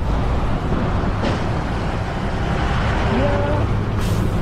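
Road traffic passing close by on a highway: a steady low engine rumble from cars and trucks, with a lorry passing right alongside near the end.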